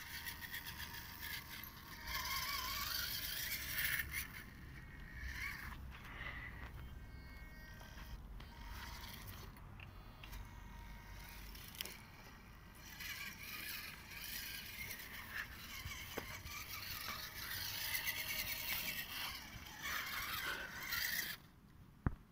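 Radio-controlled scale crawler truck driving, its electric motor whining up and down in pitch with the throttle, and its tyres scraping over gravel and concrete.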